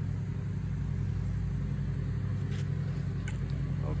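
Cordless drill running at a steady speed, spinning a canvas while paint is squeezed onto it; a constant low motor hum.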